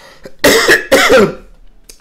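A man coughs twice into his fist, two loud coughs about half a second apart.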